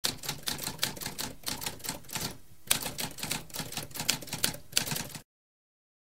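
Typewriter keys clacking in rapid succession, with a short pause about halfway through, then stopping suddenly a little after five seconds.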